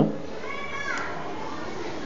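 Children's voices in the background over steady room noise, with one high call about half a second in.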